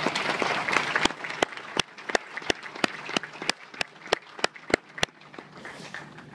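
Audience applause at the close of a speech. About a second in it thins to single sharp claps at a steady rhythm of about three a second, which stop about five seconds in.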